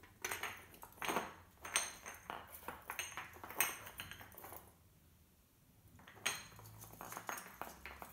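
Christmas baubles clinking and knocking against metal candlesticks and a tray as they are set in place by hand: a string of irregular light taps and clinks, with a pause of about a second and a half around the middle.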